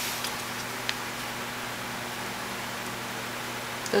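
Steady background hiss with a faint tick about a second in.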